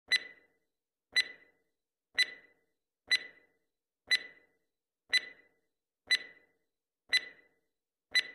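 Countdown-timer clock ticking sound effect: a sharp tick once a second, eight times, each with a brief metallic ring.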